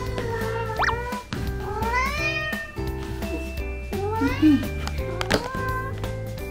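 Domestic cat meowing about four times, each call rising in pitch, over background music.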